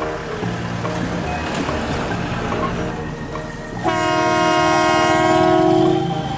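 A loud horn blast, one steady tone held for about two seconds, starting about four seconds in, from the horn of an odong-odong mini tour train. Background music with a steady beat plays before it.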